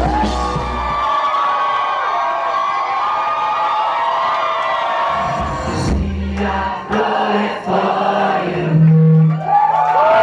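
Live band music with the crowd singing along. The bass drops out about a second in, leaving mostly voices, and comes back in around halfway.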